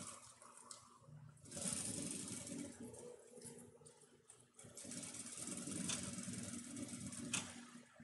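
Industrial straight-stitch sewing machine running faintly, stitching a seam in two short runs with a brief pause about halfway.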